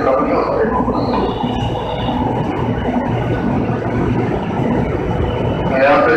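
Steady running noise of an electric commuter train standing at the platform.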